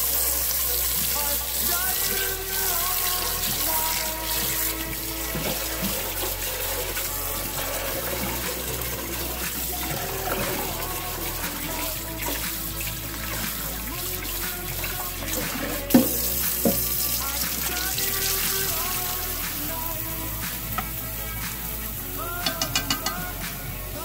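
Tap water running into a metal rice cooker pot in a stainless steel sink as rice is rinsed and stirred by hand, with a single sharp knock about two thirds of the way through. A song plays over it throughout.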